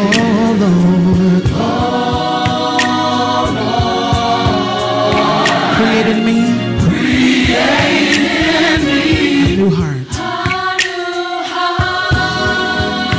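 Gospel praise team singing: a male lead vocalist on a microphone with a group of backing singers in harmony, over a steady percussive beat. Briefly thinner about ten seconds in, then full again.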